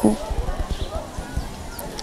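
A pause in the speech filled with low, irregular bumps and rumble on a clip-on microphone, over faint background noise.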